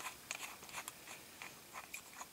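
Faint, irregular small clicks and scrapes of a metal countersink tool being handled.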